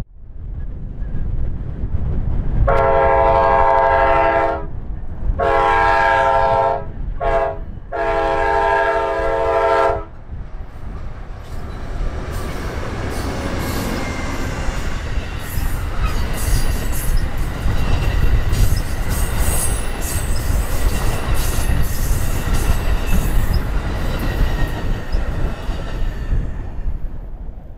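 Amtrak Southwest Chief's lead GE P42DC Genesis locomotive sounding its air horn in the long-long-short-long grade-crossing pattern. It is followed by the train of bilevel Superliner cars rolling past close by: a steady rumble with wheel clicks and high-pitched wheel squeals.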